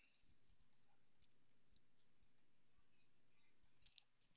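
Near silence with a few faint, scattered computer mouse clicks, one slightly louder near the end.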